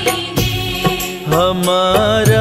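Hindi devotional bhajan music with a steady beat of percussion strikes. A melody line comes in a little over a second in.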